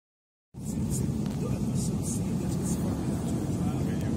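Passenger-jet cabin noise: a loud, steady low rumble that starts abruptly about half a second in, with faint passenger voices behind it.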